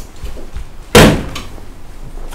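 A door slamming shut once, about halfway through: a single loud bang with a short fading tail.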